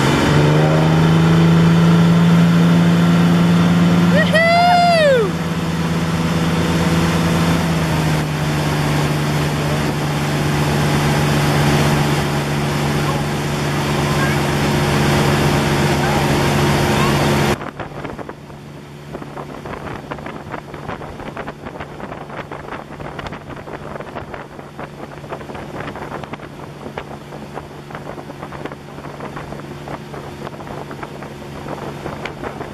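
Inboard/outboard motorboat engine running hard, towing a water skier up and along, a loud steady drone that settles slightly lower in pitch about eight seconds in. A voice whoops once, rising and falling, about five seconds in. Past the middle the sound drops suddenly to a quieter engine hum with wind buffeting the microphone.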